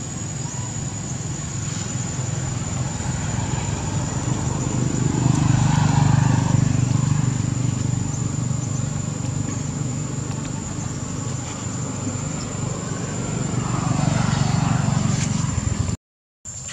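Outdoor background noise: a low rumble that grows louder about a third of the way in and again near the end, over a thin, steady high-pitched tone.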